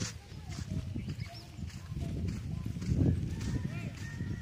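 Outdoor ambience: indistinct low voices and rumble, with a few short, high, gliding calls scattered through it.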